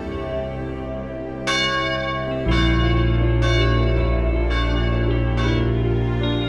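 Background music of evenly spaced bell strikes, about one a second, each ringing out and dying away over a sustained low drone that swells about two and a half seconds in.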